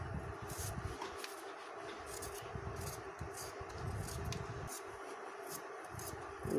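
Faint, irregular scraping of a hand vegetable peeler stripping the skin off a raw potato, with scattered light clicks.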